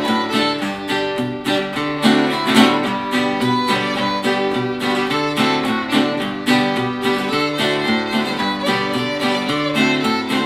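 Fiddle playing a bowed melody over strummed chords on a Gibson L-12 archtop acoustic guitar, a duet that keeps a steady rhythm.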